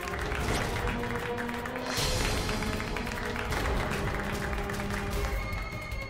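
A small group clapping their hands together, over background music.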